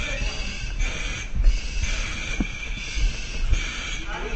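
A firefighter's heavy, rapid breathing under exertion, each breath a hiss, coming a little more than once a second, with low knocks and thuds of gear and movement underneath.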